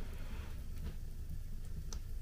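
Wood fire, birch logs among them, burning in the open firebox of a brick stove: a low steady rumble with a faint crackle and two small pops.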